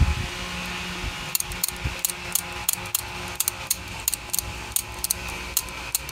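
Light metallic clicking from the push-button tuner assembly of a Philco 40-145 radio being worked by hand, an irregular run of several small clicks a second that starts about a second in and stops just before the end. A steady fan hum runs underneath.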